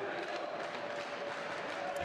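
Steady crowd noise in an ice hockey arena.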